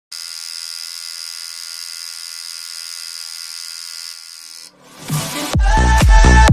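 Electric tattoo machine buzzing steadily, then cutting off after about four and a half seconds. Electronic dance music with a heavy beat comes in about five seconds in.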